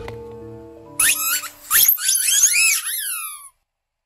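A run of high whistling squeaks sliding up and down in pitch, ending in a few falling glides that stop abruptly about three and a half seconds in. Faint held music notes come before them.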